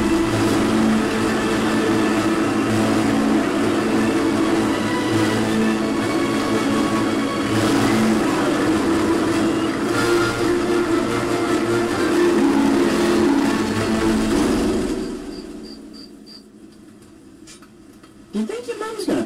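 Engine of a large animated tanker truck running as it drives off, mixed with background music; the sound fades down about fifteen seconds in.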